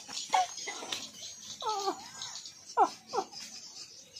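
High-pitched wordless voice making a few short cries or laughs that fall in pitch, the clearest pair near the end.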